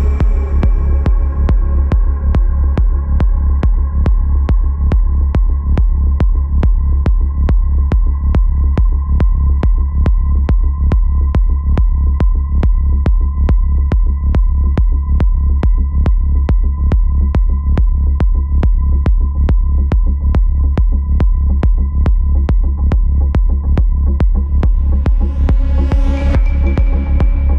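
Dark progressive psytrance played in a DJ set, in a stripped-down passage. A steady, driving kick-and-bass pulse runs under a faint held high tone, and brighter layers come back in near the end.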